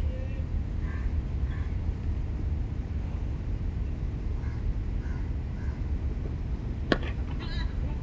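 A single sharp crack of a cricket bat striking the ball about seven seconds in, the shot that goes for a boundary. It sounds over a steady low rumble and faint distant voices.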